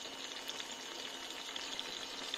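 Cherry tomatoes, garlic and dried oregano sizzling gently in oil in a frying pan, a soft steady crackle of many small pops, with a faint steady high tone alongside.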